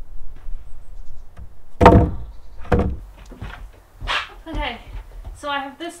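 Scrap wooden boards set down on a wooden plank table: two loud hollow thunks about a second apart, then a few lighter knocks, after faint footsteps.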